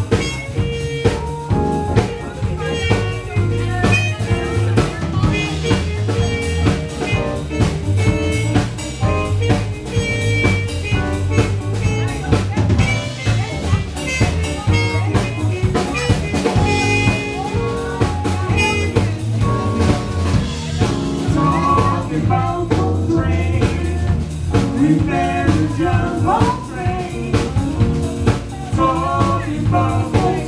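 Live jazz band: a trumpet playing a melody over bass and a drum kit keeping a steady beat.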